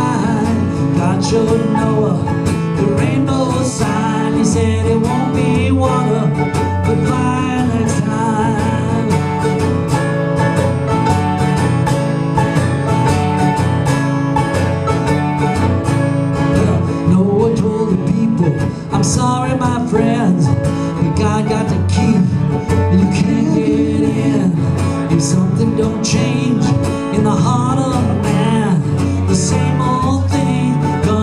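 Acoustic guitar and mandolin playing an instrumental break in a bluegrass-style song, with quick picked notes over steady strummed chords.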